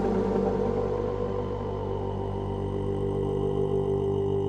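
Psychedelic trance track in a breakdown: the drums have dropped out, leaving sustained synth chords and a steady low drone while the bright top end fades away.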